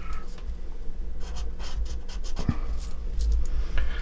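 Felt-tip marker drawing on a sheet of paper in several short scratchy strokes, over a steady low hum.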